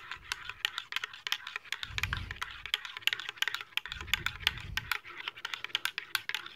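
A spoon stirring hot cocoa in a mug, clinking quickly and irregularly against the sides.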